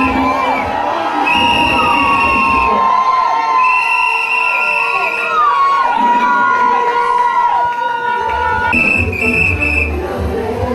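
A crowd cheering and shouting in a hall, with three long, steady whistle blasts. Dance music with a low beat comes up near the end.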